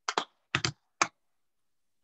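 Computer keyboard typing picked up over a video call: a handful of short key clatters in the first second or so, then quiet.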